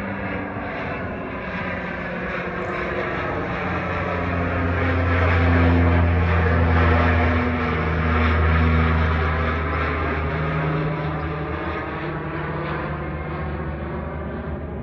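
de Havilland Canada DHC-6 Twin Otter's twin Pratt & Whitney PT6A turboprops droning as the plane climbs out and passes overhead. The sound grows louder to a peak about halfway through, then fades as it flies away.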